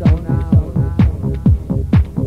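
Electronic dance music from a club DJ set: a deep kick drum on every beat, about two a second, under repeating synth chords.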